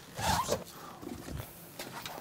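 A wooden interior door being opened by its handle: soft clicks and rasping handling noises, with a brief rising squeak about a quarter second in.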